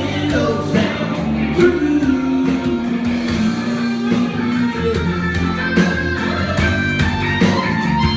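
Live rock band playing a country-rock song, with electric guitar and drums and a voice singing.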